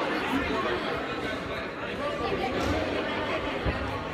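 Indistinct chatter of several people in a gymnasium, with no clear voice standing out.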